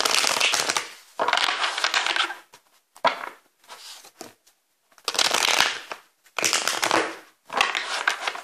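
Tarot cards being shuffled by hand, in a run of rustling, papery bursts of about a second each with short pauses between.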